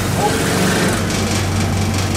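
Forecourt coin-operated tyre air compressor running with a steady low hum while a car tyre is inflated through its hose.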